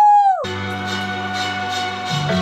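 A woman's high, held "woo" cheer that breaks off about half a second in, followed by a short burst of music with steady held chords for the rest.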